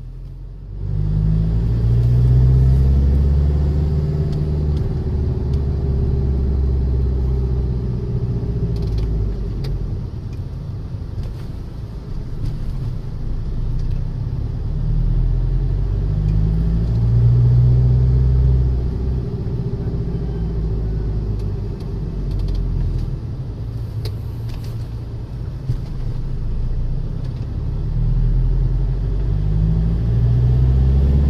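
A car's engine and road noise heard from inside the cabin while driving: a steady low hum that swells louder twice, a couple of seconds in and again past the middle.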